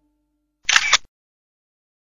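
A camera shutter sound effect: one short SLR-style shutter click, about 0.4 s long with two sharp peaks, a little over half a second in.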